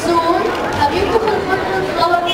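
Voices talking over background chatter: speech only, with no other sound standing out.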